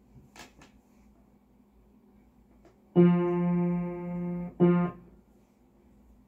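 A single low-middle note on an upright piano with its action exposed, struck twice: first held for about a second and a half, then struck again briefly. A few faint handling clicks come just before.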